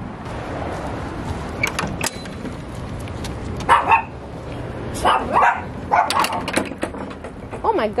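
Small dogs barking in a few short bursts in the second half, after a single sharp knock about two seconds in.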